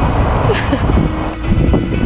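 Wind buffeting the camcorder's microphone on the deck of a sailing boat, a loud, uneven low rumble, with brief voice sounds about half a second in and near the end.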